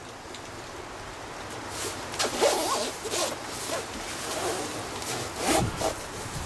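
Zipper of a quilted synthetic-fill puffer jacket being pulled up, with the nylon shell rustling. It comes in a few scratchy strokes, loudest about two and a half seconds in and again near the end.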